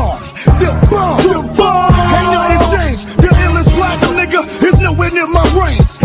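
Hip hop track: a heavy, repeating bass line under rapped vocals.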